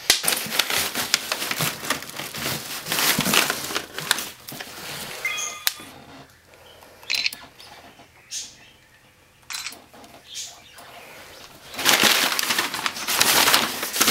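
Crumpled packing paper rustling and crinkling as hands rummage through it inside a large cardboard box. It is loud at first, drops to a few scattered crackles in the middle, and grows loud again near the end.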